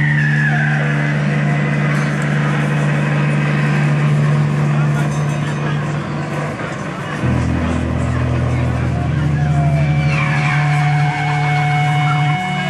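Rock band playing loud and live, with distorted guitars and bass holding long droning notes that change about seven seconds in and again near ten seconds. A high sliding note falls at the start, and more slides with steady held high tones come in near the end.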